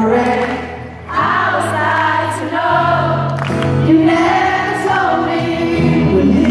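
A pop ballad performed live and sung by many voices together, with acoustic guitar and keyboard, recorded from within the concert audience. The singing drops away briefly about a second in, then comes back in full.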